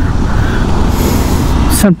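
Motorcycle riding in traffic: a steady rush of wind and road noise on the rider's camera microphone, with a low rumble underneath. Speech starts again near the end.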